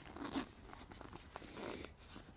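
Zipper on a backpack's hip-belt pocket being worked by hand: a short rasp a quarter second in and a longer rasp near the end, with light rustling of the pack's fabric.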